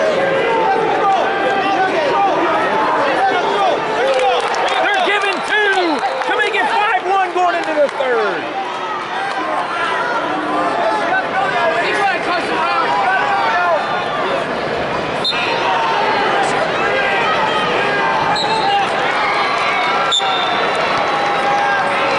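Crowd in a large arena: many voices shouting and talking over one another, with a couple of sharp knocks in the second half.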